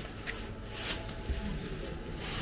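Thin plastic bag with fish in it crinkling in a few short rustles as it is handled, over a faint murmur of voices.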